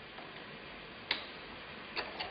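Two faint clicks about a second apart as the chrome cap of an Oras single-lever kitchen faucet is unscrewed by hand, over a low steady hiss.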